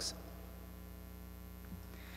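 Steady low electrical mains hum, with the short hiss of the last spoken word dying away at the very start.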